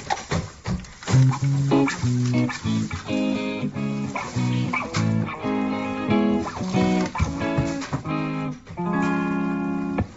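Guitar music: a run of short plucked notes that ends on a longer held chord near the end.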